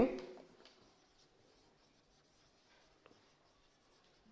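Faint scratching of a marker pen on a whiteboard as words are written, with one light tick about three seconds in.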